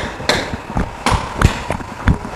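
Hammer blows on the building site: sharp, ringing strikes at an uneven pace, about five in two seconds.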